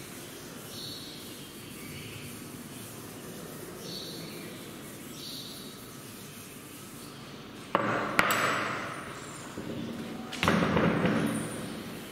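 Chalkboard being wiped with a cloth duster. Two sharp knocks come close together about eight seconds in and a third comes near the end, each followed by about a second of rubbing that fades.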